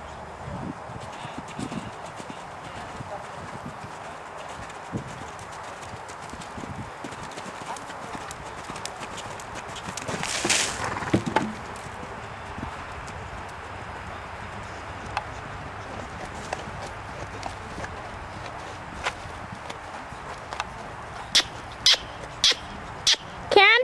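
Hoofbeats of horses moving over a sand arena, with scattered knocks and a louder rushing burst about halfway through.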